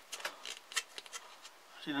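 Scattered light clicks and rustles from handling a homemade wooden mole trap as it is set: the spring is pushed down and the knotted string drawn through its hole.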